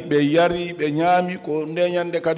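A man speaking in a language other than French, with drawn-out syllables at a fairly even pitch.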